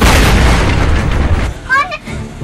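A large explosion goes off suddenly, its low rumble lasting about a second and a half. A person's short cry follows near the end.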